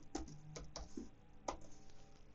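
Computer keyboard being typed on: a few faint, separate keystrokes at uneven spacing.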